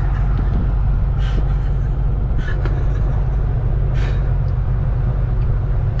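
Ford Mustang GT's 5.0 V8 running steadily at low revs, heard from inside the cabin, with a few faint clicks.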